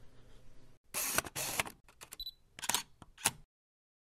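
Camera sound effect for an SLR: a few short mechanical bursts, a brief high beep, then two sharp shutter clicks. It stops dead about three and a half seconds in.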